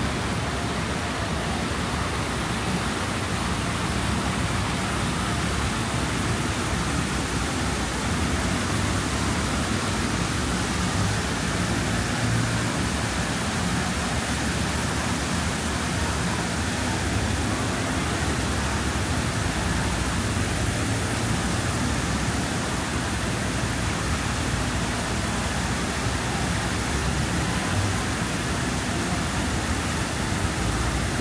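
Steady background noise of a busy city street: many passers-by talking and traffic running, with no single sound standing out.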